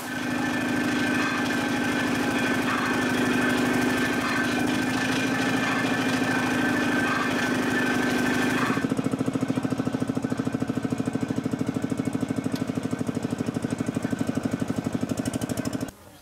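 Powered sugarcane crushing mill running steadily as cane is fed through its rollers. About nine seconds in, the sound changes to a fast, even pulsing beat.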